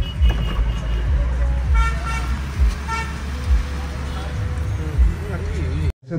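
Short vehicle-horn toots from street traffic, heard inside a car cabin over a steady low rumble with occasional low thumps. There are brief beeps just after the start, then several around two and three seconds in.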